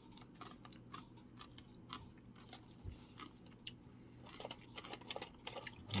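A person chewing a tortilla chip dipped in nacho cheese: quiet, irregular crunches, coming more often in the second half.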